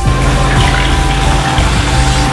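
Dual-flush toilet flushing: a steady rush of water from the cistern into the bowl.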